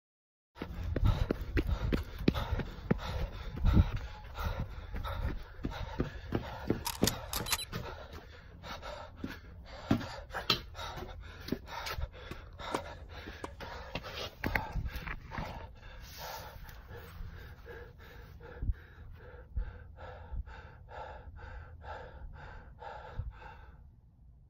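A man panting hard close to the microphone, short breaths following quickly one on another, with low rumble on the microphone; the breathing grows more even toward the end.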